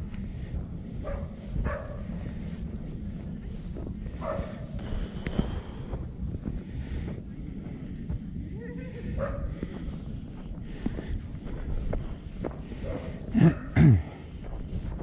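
A walker puffing and blowing, short hard breaths out over a steady low rumble of walking, ending with a brief "yeah" and a laugh.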